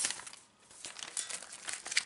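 Paper rustling and crinkling as a notebook sheet is handled, irregular crackles starting a little under a second in, the sharpest one near the end.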